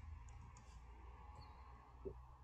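A few faint computer keyboard keystrokes as a word is finished being typed, over a low steady hum.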